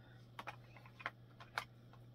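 A few faint, light clicks and taps of small plastic makeup compacts being handled, about five spread irregularly across two seconds, over a low steady hum.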